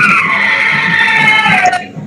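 A loud, drawn-out screech in the video-call audio, made of several high tones at once. It holds steady, then slides down in pitch and cuts off near the end. It is the sound of audio feedback or garbled digital distortion on a participant's connection.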